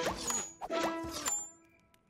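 Cartoon chime sound effects: a short run of bright, pitched dings with a high sparkle, fading out after about a second and a half.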